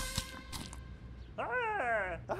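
The music stops at the start. After about a second of quiet, a cartoon character's voice makes a short, wavering, sliding vocal sound, more animal-like than speech.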